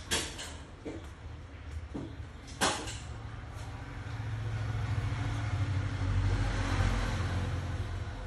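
Two sharp clicks, then from about four seconds in a steady electrical hum with a hiss that builds and holds, like a small mains-powered machine running.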